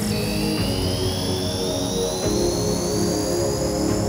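Full-on psytrance electronic music: a steady bass line under high synth tones that rise slowly in pitch, just after a fast upward synth sweep.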